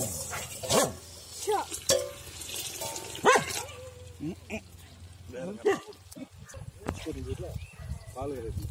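A dog barking in short, separate calls, the loudest about a second in and again after about three seconds, with people's voices in the background.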